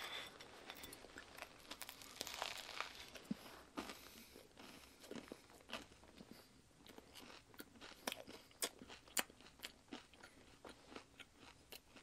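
A bite of a peanut butter and raw onion sandwich being chewed: faint, irregular crunching and wet mouth clicks, busiest in the first few seconds and sparser after.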